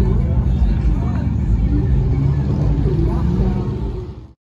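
A car engine running with a steady low rumble, with faint crowd voices over it.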